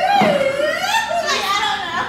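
Excited, high-pitched voices of a small group calling out over each other, with no clear words.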